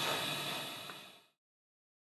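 Faint room tone and hiss fading out about a second in, then complete silence.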